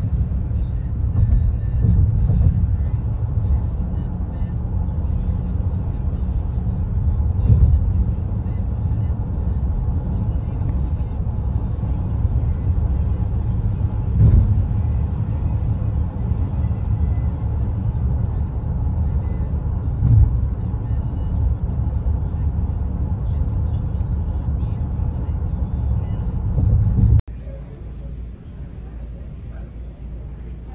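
Steady road and tyre rumble heard inside a car cabin at highway speed, with a few louder bumps. It cuts off abruptly shortly before the end, giving way to a quieter room sound.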